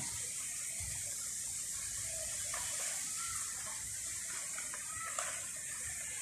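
Steady, high-pitched outdoor background hiss, with faint distant voices now and then.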